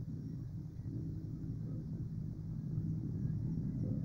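Low, steady outdoor rumble with no distinct event, growing slightly louder near the end.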